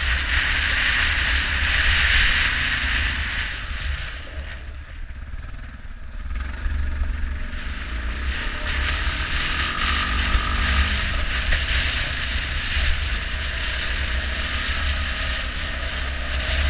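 ATV engine running under way on a dirt trail, with wind buffeting the microphone. The engine eases off for a couple of seconds about four seconds in, then picks up again.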